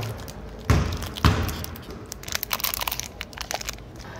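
A basketball thudding twice on a hard indoor court, about half a second apart, followed by a run of faint clicks and scuffs.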